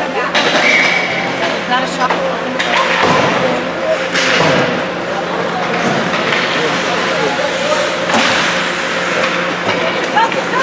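Ice hockey game sound: skates scraping and sticks and puck clacking on the ice, with sharp knocks now and then, over spectators' voices and a steady low hum.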